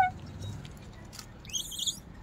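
A short, high-pitched animal call that rises in pitch, about one and a half seconds in, with a few faint clicks before it.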